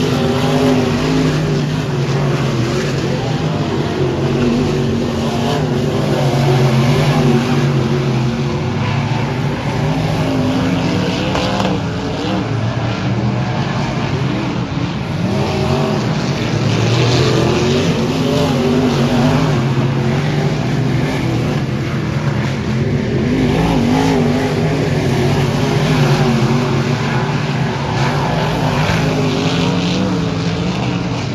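Dirt-track race cars running laps, their engines rising and falling in pitch in waves as they pass and accelerate out of the turns.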